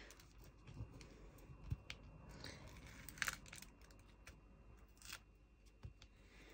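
Faint rustling and crinkling of plastic film being handled on a diamond-painting canvas, with a few light clicks scattered through.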